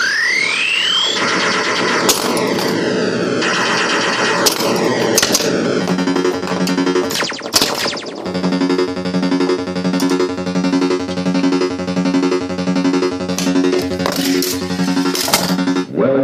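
Williams Sorcerer pinball machine in play: electronic game sounds open with a rising sweep, then from about six seconds a pulsing tone repeats about twice a second. Scattered sharp clicks and knocks from the playfield come through the whole time.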